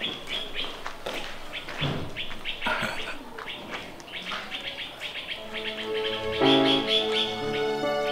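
Small birds chirping in quick short calls. About five and a half seconds in, background music with long held notes comes in and swells.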